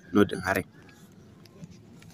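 A man's voice speaks briefly at the start, then only faint, steady background noise with a low hum.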